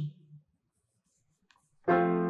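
A keyboard instrument sounds a sustained chord near the end, the opening of a hymn introduction, after about a second and a half of near silence.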